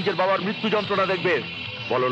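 A man speaking in a raised voice in short bursts, over a steady background music score.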